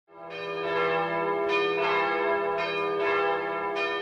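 Bells ringing, about six strikes at uneven intervals, each note ringing on into the next over a steady low hum.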